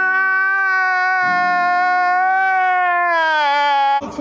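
A man's long, high-pitched crying wail, one unbroken held note that sags lower in pitch over the last second.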